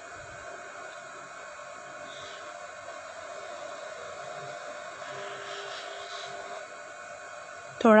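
Hands kneading soft dough in a steel plate, heard only as faint soft sounds against a steady hum and hiss.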